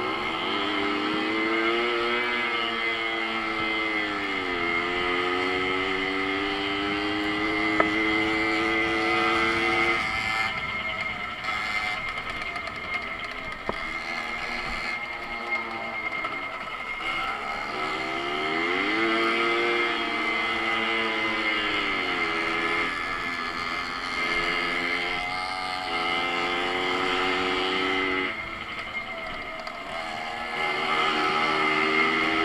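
Babetta moped's 50 cc two-stroke engine running under way, its pitch rising and falling several times as the throttle is opened and eased off, with a steady high whine running throughout.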